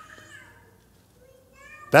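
A faint, high-pitched wavering voice, heard twice: once at the start and again just before the end, with quiet between.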